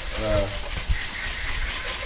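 Water hissing steadily from a hose spray nozzle as it jets onto a motorcycle.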